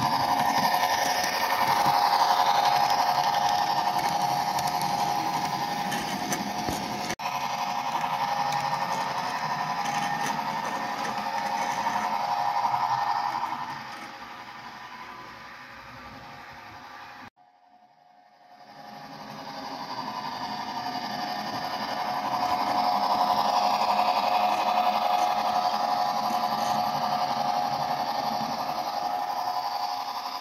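HO-scale model train running on the layout: the locomotive's electric motor whirs steadily and the wheels tick over the rail joints and turnouts as it pulls its track cleaning cars. The sound fades about halfway through, drops out briefly, then returns just as loud.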